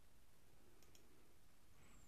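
Near silence: faint room tone, with a couple of faint clicks about a second in.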